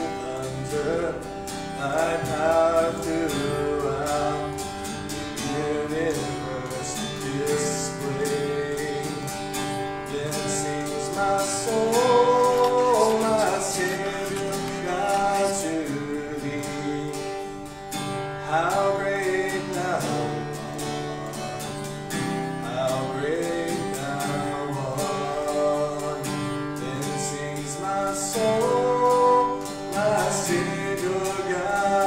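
A man singing while strumming an acoustic guitar.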